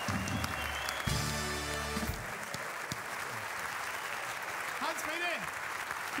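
Audience applauding in a large hall. About a second in, a short held chord of music sounds for about a second over the clapping.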